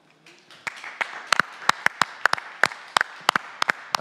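Applause from a small audience, starting about half a second in, with a few close, sharp hand claps standing out above the rest.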